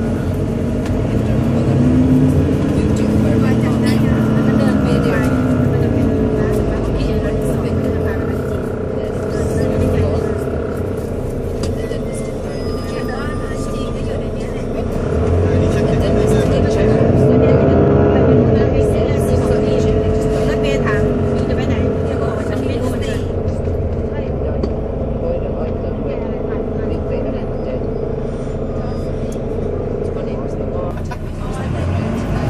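Volvo B9TL double-decker bus's six-cylinder diesel engine heard from inside on the upper deck, a steady drone whose pitch climbs and falls as the bus accelerates, once in the first few seconds and again about halfway through.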